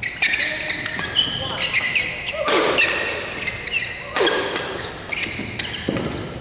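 Badminton doubles rally: rackets striking the shuttlecock in quick exchanges, with court shoes squeaking sharply on the court mat as the players lunge and turn.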